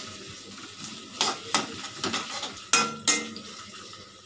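Sliced onions sizzling in hot oil in a metal pan while a perforated steel spatula stirs them, scraping and clinking against the pan about five times.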